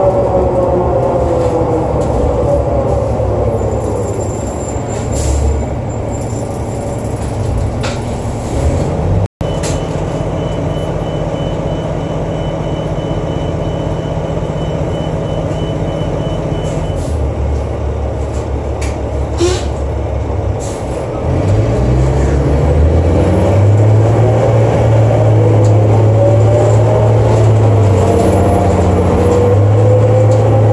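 Inside the cabin of a New Flyer D40LF bus with a Cummins ISL diesel and an Allison B400 automatic transmission that has no torque-converter lock-up. The driveline whine falls as the bus slows, the engine then runs steadily while a high beep repeats for several seconds, and from about twenty seconds in the engine and transmission whine rise as the bus pulls away.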